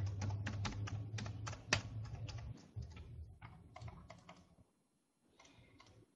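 Typing on a computer keyboard: quick, irregular key clicks, several a second, thinning out and stopping about four and a half seconds in, with one more faint click near the end. A low hum runs underneath for the first couple of seconds.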